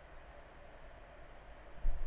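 Faint steady room tone and microphone hiss, with one dull low thump near the end.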